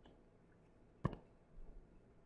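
Two clicks of a stylus tapping on a tablet screen while drawing: a faint one at the start and a sharper, louder one about a second in.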